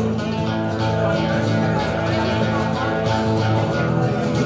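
Live band music in an instrumental passage without singing, led by an electric guitar played on a hollow-body guitar.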